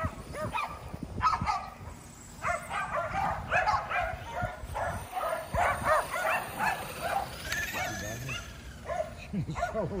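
Several Kerry Blue Terriers barking and yipping excitedly in quick, overlapping calls, thickest through the middle of the stretch.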